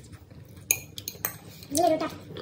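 Metal forks clinking and scraping against ceramic plates as noodles are eaten, with several sharp clinks from about two thirds of a second in. A brief voice sound near the end.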